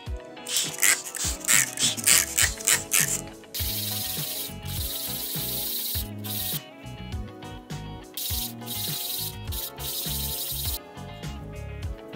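Cured resin frame being wet-sanded on a sanding sheet. Quick back-and-forth rubbing strokes for the first few seconds give way to a steady rubbing for several seconds, with a couple of short breaks.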